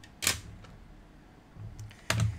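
Hard plastic PSA graded-card slabs being handled: one short scrape-click about a quarter second in, then faint handling clicks near the end.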